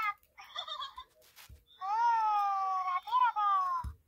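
A cat meowing: a short, broken call about half a second in, then two long, high meows in the second half, the first about a second long that rises and then slides slowly down in pitch, the second shorter.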